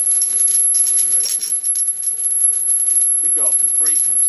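High-voltage arc from an IGBT half-bridge-driven X-ray transformer, crackling irregularly, over a steady high-pitched whine from the switching inverter.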